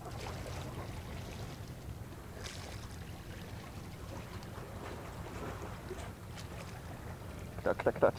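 Steady low outdoor ambience of wind and sea water at a concrete tetrapod breakwater, with no distinct event standing out.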